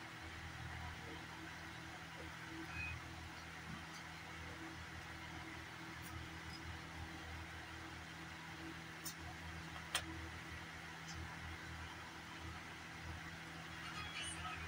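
Steady low background hum with a few light clicks, the sharpest about ten seconds in.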